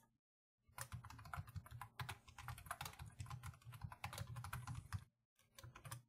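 Typing on a computer keyboard: a quick, quiet run of key clicks starting under a second in, a short pause near the end, then a few more keystrokes.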